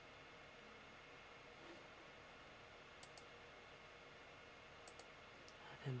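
Near silence: faint room tone with a few soft clicks, a pair about three seconds in and another pair about five seconds in.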